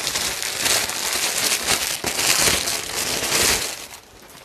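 Continuous crinkling and rustling of a stiff white hoop petticoat and its packaging as it is pulled out and shaken open, dying away just before the end.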